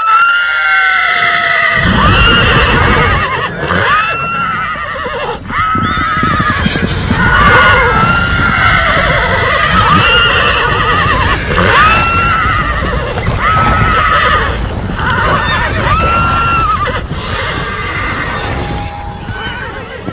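Horses neighing again and again, about one whinny every second or two, over heavy hoofbeats of running horses that start about two seconds in and die away near the end.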